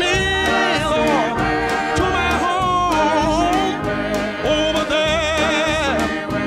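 Gospel song: a singer holding long notes with vibrato over instrumental accompaniment.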